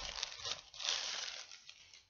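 Crinkling and rustling of packaging being handled as a hair-weave bundle is unwrapped and pulled out, in uneven bursts that fade toward the end.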